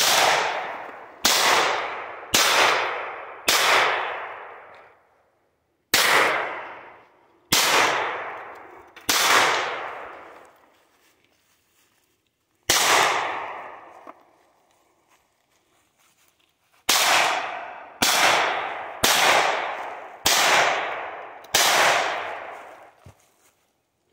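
Fourteen pistol shots, each ringing out and dying away over about a second. They come as four shots about a second apart, three slightly slower, a single shot, then a steady run of six about a second apart near the end.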